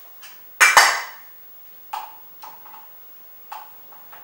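A loud, sharp clack about half a second in, then several light clinks of a metal spoon against a small container as baking powder is scooped and measured.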